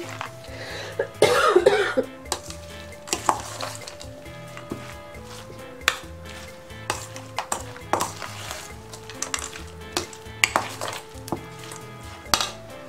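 A metal spoon stirring a wet grated-apple and banana filling in a stainless steel bowl, with a louder scrape about a second in and scattered clinks of the spoon on the bowl. Soft background music plays under it.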